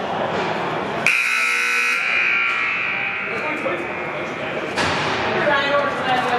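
Hockey rink scoreboard buzzer sounding once, about a second in, for roughly a second, its ring lingering in the large hall for another second or so.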